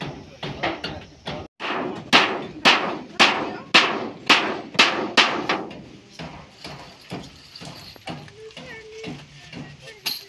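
Hammer blows in a steady run of about two a second, sharp and ringing, then giving way to lighter scattered knocks and voices.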